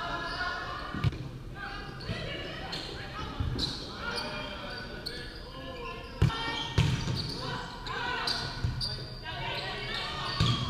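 Volleyball being hit during a rally drill: a handful of sharp slaps of hands on the ball, the loudest just after six seconds as a player spikes. Players call out throughout, echoing in a large gym.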